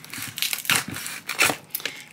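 Packaging being pulled open and torn to take out a glass cutting board: irregular rustling and tearing, a few louder rustles about halfway through.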